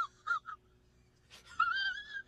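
High-pitched whining squeaks: three short ones in quick succession, then a longer, wavering one near the end.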